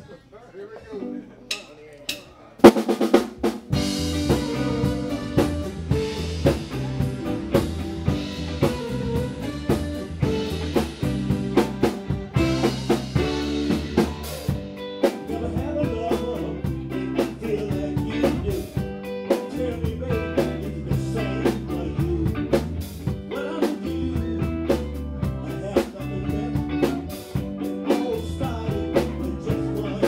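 A live band kicks into a song about two and a half seconds in, after a few sharp clicks: drum kit with snare and bass drum keeping a steady beat under electric guitar and keyboard.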